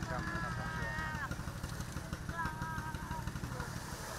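A low, steady engine-like rumble, with a voice heard faintly above it twice.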